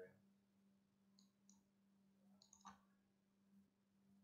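Near silence: a faint steady hum with a few soft computer-mouse clicks, about a second in, at one and a half seconds, and again around two and a half seconds.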